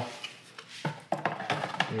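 A filament spool knocking against a cardboard box as it is set down into it: a few light, sharp knocks in the second half.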